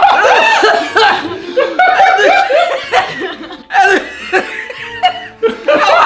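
Several people laughing together in repeated bursts, with a couple of short breaks.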